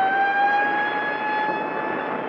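A single high wailing tone with overtones, wavering slightly in pitch and then holding steady, over a rushing hiss.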